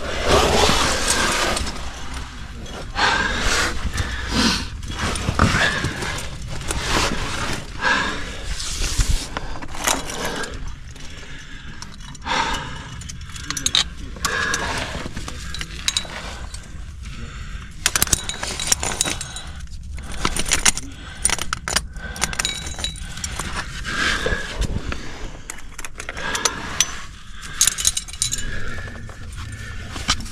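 Metal climbing gear (carabiners and camming devices) clinking and clicking in many short, uneven bursts, with hands and clothing scraping on sandstone as a climber works up a chimney and places protection.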